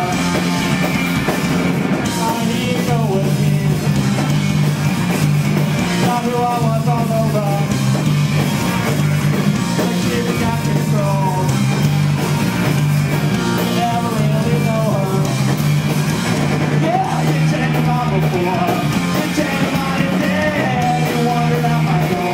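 A punk rock band playing live and loud: electric guitar, bass guitar and a drum kit, with a singer at the microphone over them.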